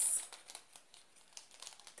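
Faint rustling and crinkling of packaging with light scattered ticks as a small cardboard gift box is handled and turned over in the hands.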